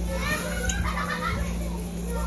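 Children's voices, high-pitched chatter and calls, about a third of a second in to about a second and a half, over a steady low hum.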